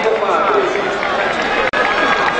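Several people's voices talking over one another, loud and steady, with a brief cut in the sound near the end.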